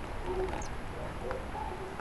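Quiet outdoor background during a lull in a thunderstorm: a steady low hiss with a few faint, short bird calls.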